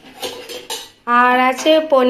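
Steel cookware clinking as bowls and lids are handled, a few sharp clatters in the first second. About halfway through a person's voice comes in loud, holding one long, steady note.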